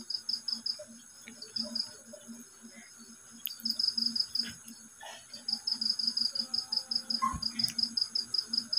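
Cricket chirping: a high, rapid pulsing at about seven pulses a second, in runs with short breaks. A few faint clicks and knocks sound alongside it.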